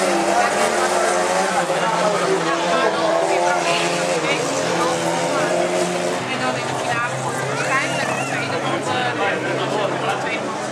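Engines of several small dirt-track race cars revving and falling back as they race around the track, over a steady lower engine hum.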